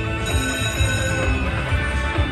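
Buffalo Ascension video slot machine playing its electronic celebration music with ringing chimes as a retrigger awards five more free games, over a low repeating beat.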